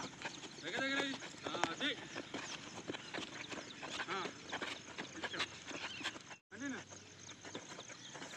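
A few short bleats from livestock, with a wavering, quavering tone, over steady open-air background noise. There is a brief cut to silence about six and a half seconds in.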